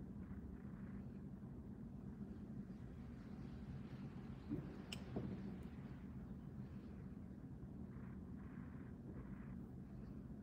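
Quiet room tone: a steady low hum with faint small handling noises and one sharp little click about five seconds in.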